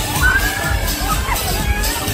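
Riders on a swinging fairground thrill ride screaming: several high, drawn-out screams that rise and fall, over loud ride music with a heavy bass beat.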